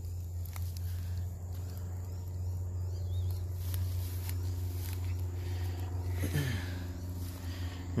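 A steady low hum runs throughout, with faint rustling and a few light ticks from grass being brushed close to the microphone.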